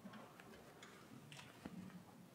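Near silence in a large room, broken by a few faint, irregular light clicks.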